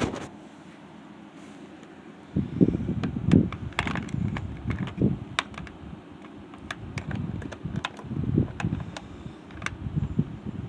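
Irregular hard plastic clicks and knocks of a toy van and an action figure being handled, over low rubbing and handling noise, starting about two seconds in.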